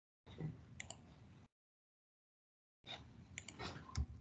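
Faint clicks and handling noise picked up by a video-call microphone in two brief snatches, each cut off abruptly into dead silence by the call's noise gating.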